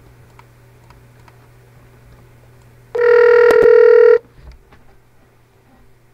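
Electronic connect tone from the Sylk WebRTC conferencing client as it joins a conference: one steady, pitched tone with a buzzy edge, lasting a little over a second, with a couple of clicks in its middle.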